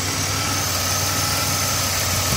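2001 Chevrolet Monte Carlo's V6 engine idling steadily, heard close up in the open engine bay, with a faint steady high whine over the hum.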